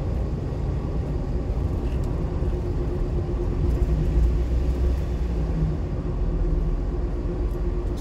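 Steady low engine and road rumble inside the cab of a small delivery truck on the move.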